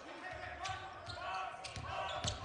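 Basketball bouncing on a hardwood court during live play, with several short thuds and a few sharp higher clicks, over a faint steady hum of the gym and faint voices.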